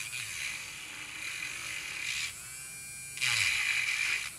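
Small battery-powered handheld electric nail drill running with a steady high whine. It thins out for about a second past the midpoint and comes back louder near the end.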